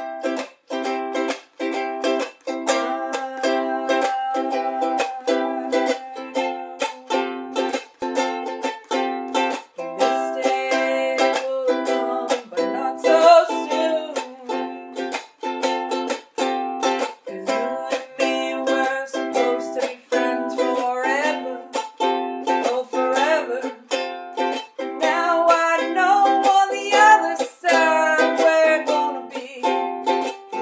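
Ukulele strummed in a steady rhythm of chords, with a voice singing along in places from about ten seconds in.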